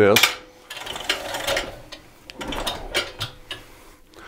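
Self-retracting hose reel ratcheting as the torch hose rewinds onto it: two runs of rapid clicking from the reel's latch pawl, about a second in and again past the middle.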